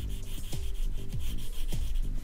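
Wax crayon rubbing on paper in quick back-and-forth strokes as a stripe is coloured in, over background music with a steady beat about twice a second.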